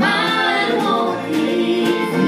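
Live bluegrass band: a woman's lead voice with harmony singing, over acoustic guitars and banjo.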